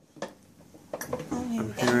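Wooden wick of a Yankee Candle jar candle crackling: two small sharp pops in the first second, then speech over it.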